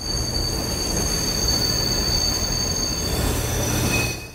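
Passenger train running along the track: a steady rumble with a high, steady squeal of the wheels above it that drops away shortly before the end.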